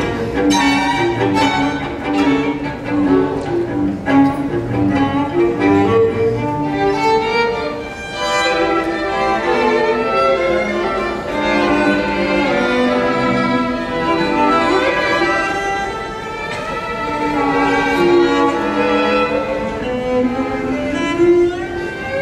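A string quartet of two violins, viola and cello playing a tango. The first part is full of short, sharply accented strokes; from about eight seconds in, the lines turn longer and more held.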